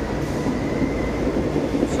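Commuter train pulling out of an underground station platform: a steady rumble with a faint, steady high whine.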